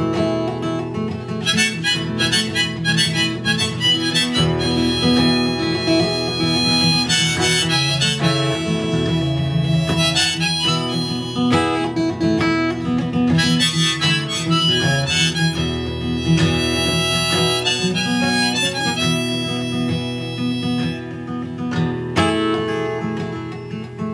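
Harmonica playing a solo over strummed acoustic guitar, an instrumental break between verses of a folk-country song.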